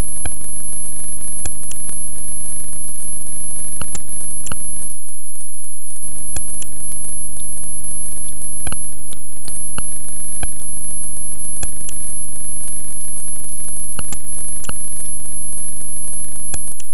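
Experimental glitch electronic music: a steady low buzzing drone under a constant very high whine, scattered with sharp irregular digital clicks. The low drone drops out briefly about five seconds in.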